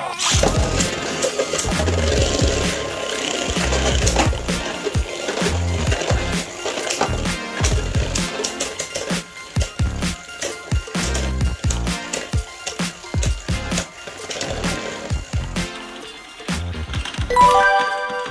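Two Beyblade Burst tops, Prominence Valkyrie against another Valkyrie, launched into a plastic stadium, whirring and clacking against each other in rapid repeated hits. The collisions grow sparser as the tops lose spin, under background music.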